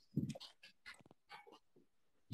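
Faint, choppy fragments of a voice breaking up over a poor video-call internet connection, a short burst just after the start, then scattered clipped snippets.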